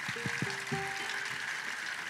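A few soft single notes from a folk string band's instruments: some short plucked notes, then a held note, with no tune yet, over a steady hiss.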